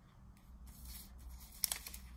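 Paper rustling and crinkling as a vinyl LP and its sleeve are handled, building from about half a second in, with a sharp crackle about three-quarters of the way through.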